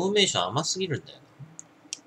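A man speaking for about a second, then two short, sharp clicks near the end.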